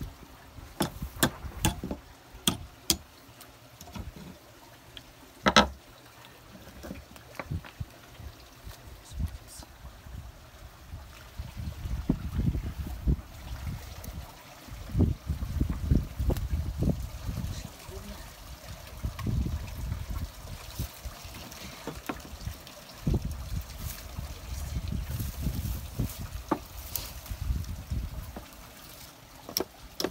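Sharp knocks and clatter on wooden sluice planks, many in the first few seconds and scattered after, over low gusty rumbling and a faint trickle of water.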